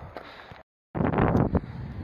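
Wind buffeting the camera microphone, a loud, rough rumble that starts abruptly about a second in after a brief dead-silent gap.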